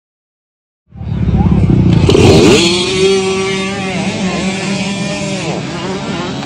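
Dirt bike engine revving hard, starting about a second in after silence, its pitch rising and falling.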